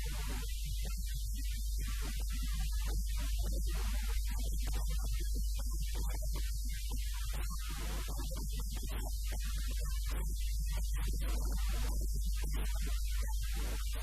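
Loud, steady electrical mains hum, a low buzz that runs unbroken and dominates the sound. Above it, choppy, broken-up sound that cuts in and out many times a second.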